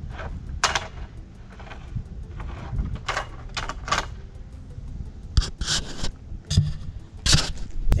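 Irregular knocks, clicks and scraping from a telescoping Doca extension pole as it is bent and wobbled to show how much it flexes.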